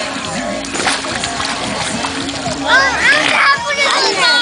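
Swimming-pool water splashing as a baby is held in it, followed about three seconds in by a high-pitched voice calling out in short rising and falling cries.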